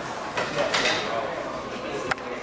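Indistinct voices from a group of people, loudest a little under a second in.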